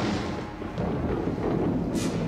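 Low rolling thunder rumble, a spooky title-card sound effect, with a whoosh near the end.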